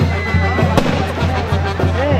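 A Mexican banda de viento (brass wind band) playing, with a steady, evenly repeating bass beat underneath. A single sharp bang cuts through just under a second in.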